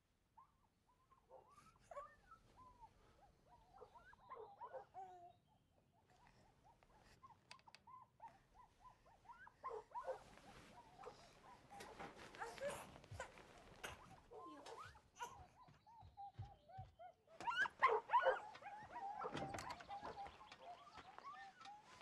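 A baby whimpering and fussing in short, wavering cries, faint at first and growing louder through the second half, with rustling of bedding.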